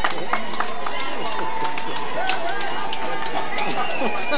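Several voices at once from a crowd, overlapping and unclear, with scattered sharp claps or knocks.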